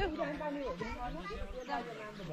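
Background chatter of several voices, a young child's among them, talking quietly.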